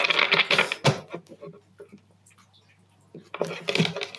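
Tarot cards being shuffled and handled: a rustling, riffling burst of cards in the first second, then faint scattered taps, and another rustle of cards about three and a half seconds in.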